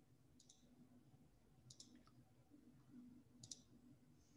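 Near silence: faint room tone with several brief, faint clicks scattered through, of the kind made by a computer mouse or keyboard.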